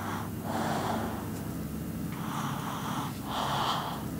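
Soft breathing close to the microphone: three breaths, each lasting most of a second, about a second apart.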